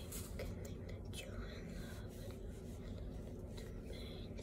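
A wet paper towel rubbing and crinkling against skin in scattered short scratchy strokes, over a steady low room hum.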